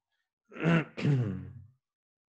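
A man clearing his throat in two short voiced pushes, starting about half a second in.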